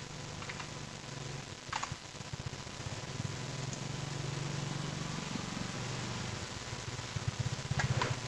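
Quiet room tone: a low steady hum with a faint hiss, and a few faint computer-mouse clicks in the first two seconds.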